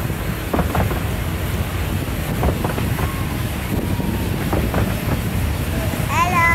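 Narrow-gauge railway carriages running along the track: a steady low rumble with irregular clicks of the wheels over the rail joints.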